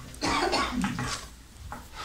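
A person coughing, in short bursts within the first second or so.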